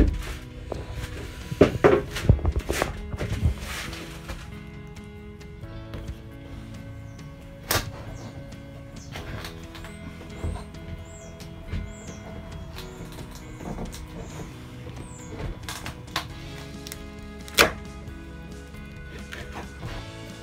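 Background music throughout, with a few sharp wooden knocks from a timber brace being worked away from a fibreglass roof patch. There is a cluster of knocks in the first few seconds and single knocks around the middle and near the end.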